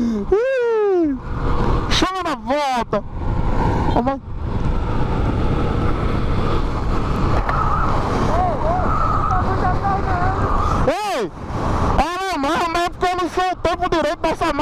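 Motorcycle riding at highway speed: steady wind rush over the microphone with the engine running underneath. Bursts of voices, laughing and shouting, come in the first few seconds and again from about 11 seconds on.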